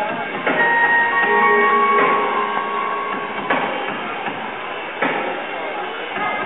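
Show music playing, with a strong hit about every second and a half and held tones between the hits.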